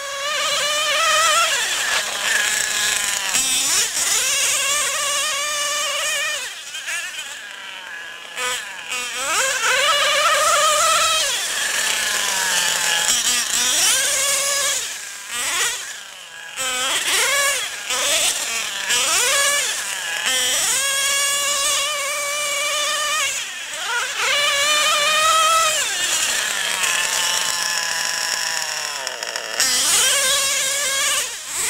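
Modified O.S. .28 two-stroke nitro glow engine in a Mugen 5T RC truggy, revving high and falling back over and over as the truck accelerates, slows and turns. Its whine rises and drops in pitch every few seconds and fades briefly when the truck is far off.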